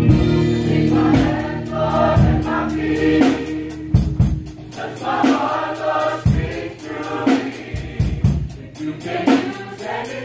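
Mixed church choir singing a gospel song in parts, over a steady beat of drums.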